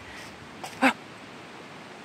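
A woman's short startled exclamation, "Oh!", about a second in, reacting to a small animal darting past.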